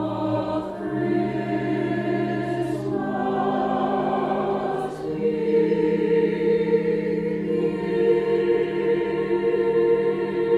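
A small mixed choir singing slow, held chords on the line 'the work of Christmas begins', the chord changing every two seconds or so and the singing growing louder about halfway through.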